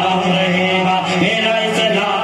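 A man singing a naat, an Urdu devotional poem, into a microphone, drawing out long held notes.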